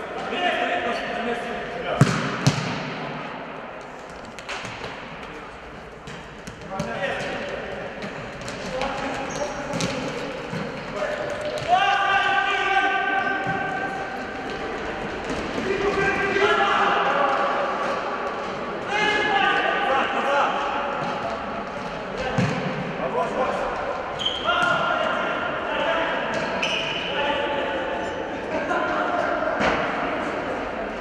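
Indoor futsal play: the ball is kicked and bounces on the hard court, with two sharp strikes near the start and one later on, while players shout and call out. It all echoes around a large sports hall.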